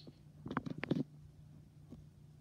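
Small dog mouthing and chewing a plush toy: a quick cluster of scuffs and clicks about half a second in, lasting about half a second.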